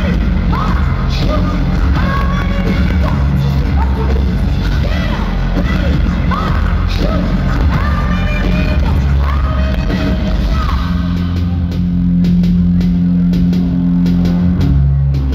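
Live rock band playing loud through a concert PA, a female vocalist singing over bass and drums. About eleven seconds in the vocal drops out and the band moves into a heavier passage with a steady low bass note and drum hits.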